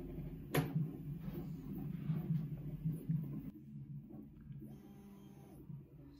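Prusa i3 MK3S+ 3D printer running a print, its stepper motors making a low hum that pulses unevenly as the axes move. A sharp click comes about half a second in.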